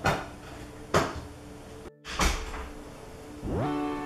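A shelf stereo's music interrupted while the song is changed: two sharp clicks, the sound cutting out just before two seconds in, another click, then a new track coming in with a rising swoop that settles into held notes near the end.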